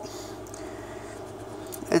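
Faint scratching of a scratch-off lottery ticket's coating under a small handheld scratcher, over a steady low background hum.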